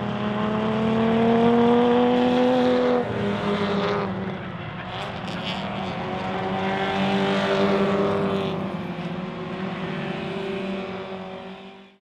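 Four-cylinder engines of Hyundai Excel race cars revving as they drive past on the track, the engine note rising under acceleration. A second pass comes in about four seconds in, rising then falling away. The sound fades out near the end.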